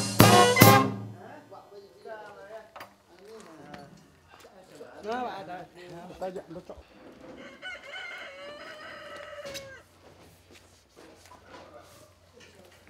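A brass band of saxophone, trumpet and drums stops playing within the first second. After that a rooster crows a few times, ending with one long drawn-out crow from about eight to nine and a half seconds in, over faint voices.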